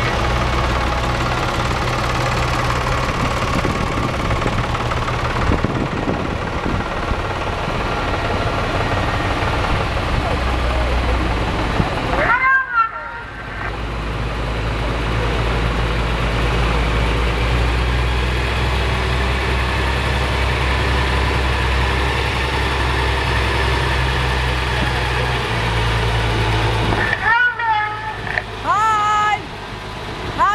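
Diesel engines of a farm tractor and then a fire tanker truck running at low speed as they roll past, a steady low hum. Brief rising-and-falling tones sound about twelve seconds in and again several times near the end.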